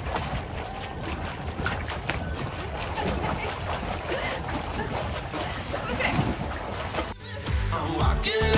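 Water splashing and sloshing as a swimmer kicks beside a boat's stern. Music starts near the end.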